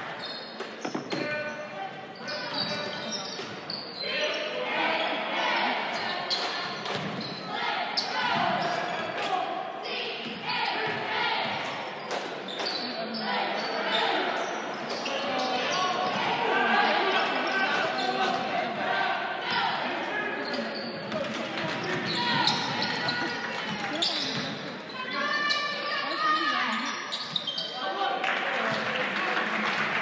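Basketball dribbling and bouncing on a hardwood gym floor during play, mixed with players and spectators talking and calling out, echoing in a large gymnasium.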